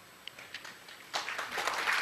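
Audience applause starting about a second in after a quiet pause and building up.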